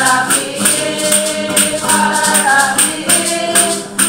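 A congregation singing a hymn together, with a shaker keeping a steady beat about twice a second.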